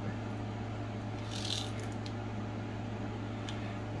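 Brief soft rustle of yellow washi tape being pressed down along the edge of a diamond painting canvas, about a second and a half in, over a steady low hum.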